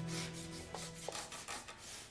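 Pencil scratching on paper in quick, short strokes while sketching, about four or five strokes a second.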